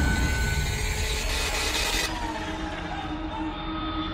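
Jet airliner flying overhead: a broad rushing engine roar that cuts off abruptly about halfway, leaving a quieter hum with thin steady high tones.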